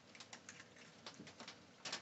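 Raccoon eating dry cat food: faint, irregular crunching clicks as it chews and noses through the kibble, with a slightly louder click near the end.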